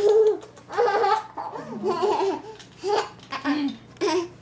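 Baby laughing in a string of short, high-pitched bursts.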